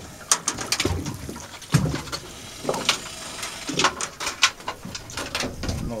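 A large crocodile in a steel-mesh cage trap that will not settle: irregular sharp knocks and clanks against the cage, with several short low grunts in between.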